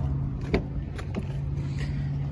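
Driver's door of a 2015 Honda CR-V being opened: a sharp click about half a second in and two lighter clicks around a second in, over a steady low hum.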